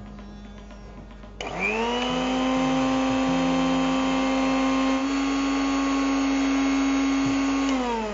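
An electric mixer grinder (mixie) is grinding fresh herb leaves with water into a paste. The motor switches on suddenly about a second and a half in, and its pitch climbs quickly to a steady whine. Near the end it is switched off and winds down with falling pitch.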